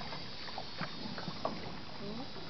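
Water sloshing and splashing around a small wooden rowing boat under way, with scattered short splashes and knocks over a steady hiss.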